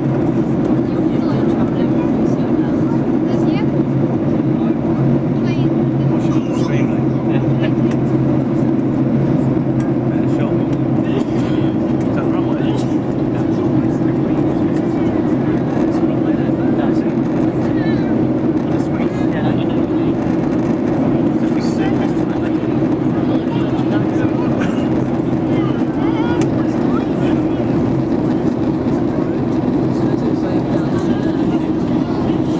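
Steady drone of a jet airliner's engines and rushing air heard from inside the passenger cabin during descent, holding an even level, with faint light ticks over it.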